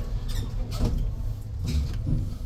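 A ThyssenKrupp glass passenger lift car travelling between floors, with a steady low rumble and three brief higher-pitched squeaks or ticks through the ride.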